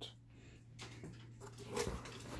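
Faint handling noise as a hand reaches into a cardboard box of packed mediabook cases, with a short scraping rustle near the end as a case is slid out, over a low steady hum.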